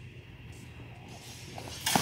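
Quiet hall room tone, then near the end a single sharp strike of a steel training longsword as the fencers exchange.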